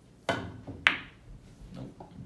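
Pool cue tip striking the cue ball, then about half a second later a sharper, louder clack as the cue ball hits an object ball.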